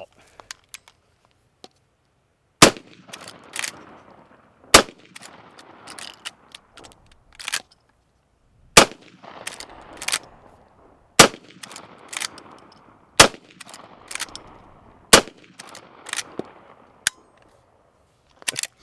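Henry Axe brass-receiver lever-action .410 short-barreled shotgun firing six shots about two seconds apart, with a longer pause after the second. Between shots the lever clacks as it is cycled, and each shot echoes across the range. The old, corroded shells all fire.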